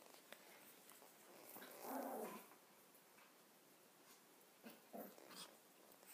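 Mostly near silence, with one short, faint vocal sound from a small Pomeranian dog about two seconds in while it waits for a treat, and a few soft clicks near the end.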